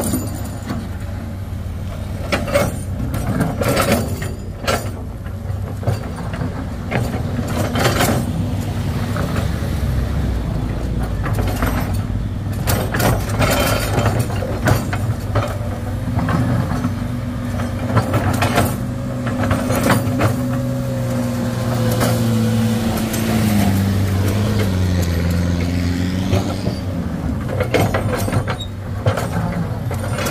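Hydraulic excavator's diesel engine running under load as the bucket pushes and scrapes loose soil and rock, with scattered knocks and clanks of stone and steel. The engine pitch drops and wavers a few times in the last third.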